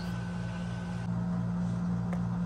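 A steady low machine hum with a regular pulsing, and a faint high whine that stops about a second in.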